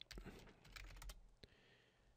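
Faint computer keyboard typing: a quick run of keystrokes entering a command, stopping about one and a half seconds in.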